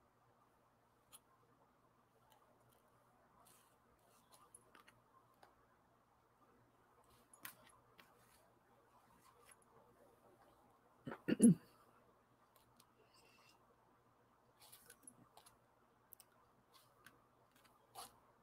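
Faint small clicks, taps and scratches of painting at a desk: a brush working on sketchbook paper and in an ink pan. A short hummed vocal sound about eleven seconds in is the loudest moment.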